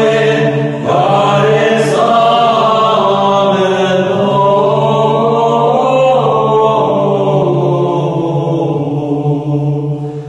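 Greek Orthodox chant: voices singing a slow melody over a steady held low drone note.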